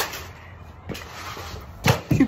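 Handling knocks on the tabletop the camera sits on: a sharp knock at the start, a small tick about a second in, and a heavier thump near the end as hands come down on the table.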